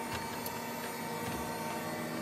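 Steady hum and whine of a light aircraft's cockpit electrics with the engines not yet running, heard from inside the cockpit, before the engine start. A faint click comes about halfway.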